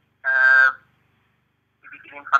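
A man's voice heard over a telephone line: one short, held, steady-pitched syllable, then a pause, with talk starting again near the end.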